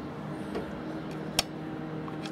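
A single sharp metallic click about one and a half seconds in, as the setting plug is pulled out of a socket in the overcurrent plug bridge of a Reyrolle TJV electromechanical protection relay. A faint steady low hum runs underneath.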